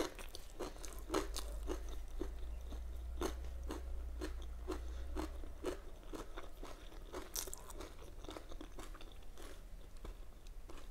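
Close-miked chewing of a mouthful of homemade egg burger with lettuce: moist, crunchy chews about twice a second, getting a little softer toward the end. A steady low hum runs underneath.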